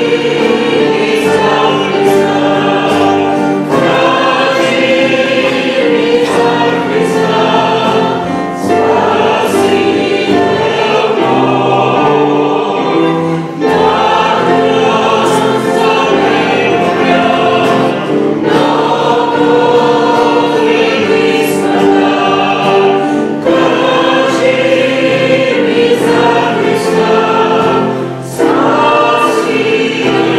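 Several voices singing a worship song together, accompanied by strummed acoustic guitar.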